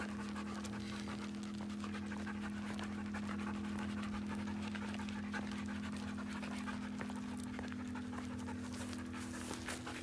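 A dog panting steadily as it walks on a leash, with a steady low hum underneath.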